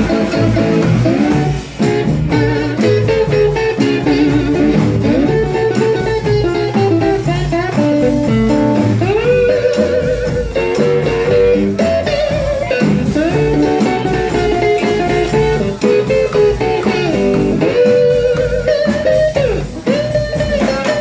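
Live blues band with an electric guitar taking the lead: a solo of quick runs and bent, sliding notes, with the band playing underneath.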